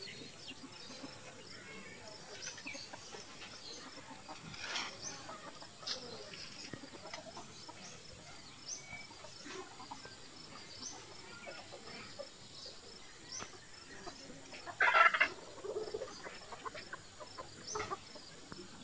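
Chickens clucking, with one louder call about fifteen seconds in, over faint high chirping in the background.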